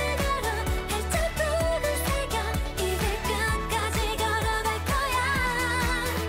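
Korean pop song: a sung vocal line with wavering held notes over a backing track with a steady beat and bass.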